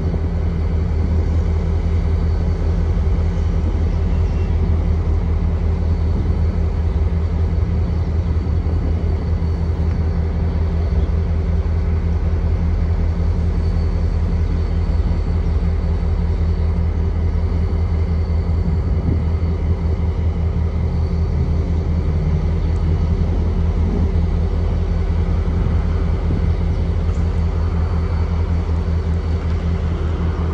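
Diesel-electric locomotives idling with a steady, deep engine drone and no change in pitch.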